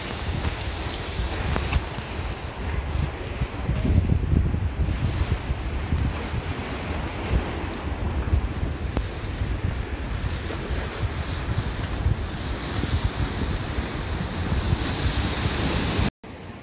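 Wind buffeting the microphone over a steady rush of ocean surf, gusting louder about four seconds in.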